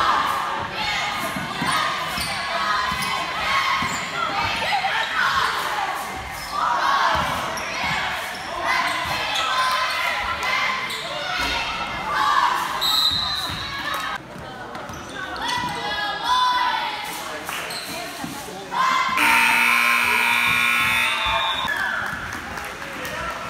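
A basketball bouncing on a hardwood gym floor amid voices that echo in the hall. About nineteen seconds in, the scoreboard horn sounds loudly for about two seconds, signalling the end of the game.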